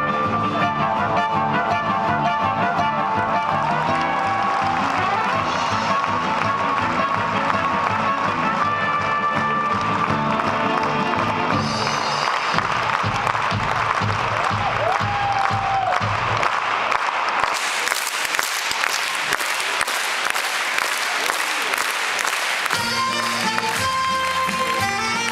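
Circus music playing, giving way in the second half to several seconds of dense audience applause, after which a new tune starts near the end.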